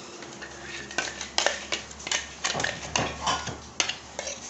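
Metal spoon clinking and scraping against a stainless steel mug while scooping out a thick chutney, a quick uneven run of sharp clinks from about a second in.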